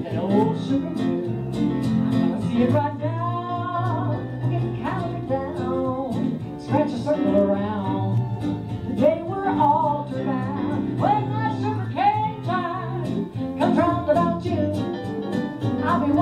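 Western swing band playing live, with fiddles and electric and acoustic guitars over a steady bass and rhythm.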